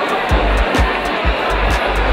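Background music with a steady beat: quick, even ticks about four times a second over a low pulse.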